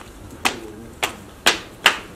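Footsteps of flat sandals on paving and concrete steps: four sharp slaps about half a second apart.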